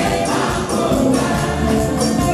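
Live gospel praise music: a choir singing over a band with a steady beat.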